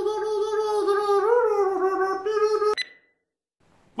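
A long held note at one pitch, wavering slightly, that cuts off abruptly a little under three seconds in, followed by silence.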